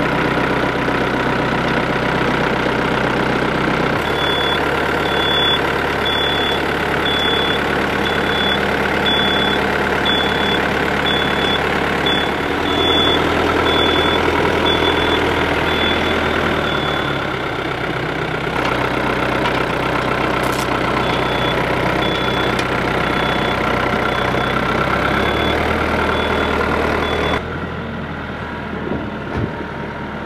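Yanmar compact tractor's diesel engine running steadily, its sound changing abruptly several times. A high, regular reversing alarm beeps in two long runs.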